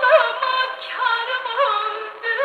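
A woman singing a Turkish folk song, played back from a 78 rpm shellac record on a gramophone. The melody bends and wavers continually in ornamented turns.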